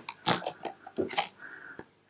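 A few short crackling clicks and rustles of a handheld compact camera being moved and turned, spread over the two seconds.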